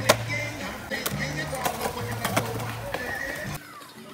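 Background music with a bass line and vocals, over sharp skateboard clacks: the board popping and landing on concrete, loudest just after the start, with more clacks through the middle. The sound drops off suddenly near the end.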